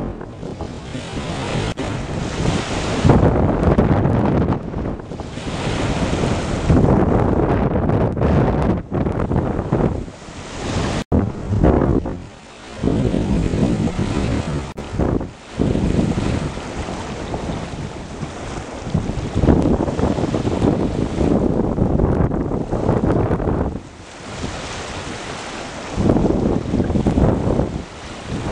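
Strong wind buffeting the microphone in gusts, with a few brief lulls, over the rush of a rough, wind-whipped sea.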